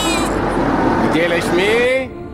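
Voices speaking over the low, steady rumble of a car.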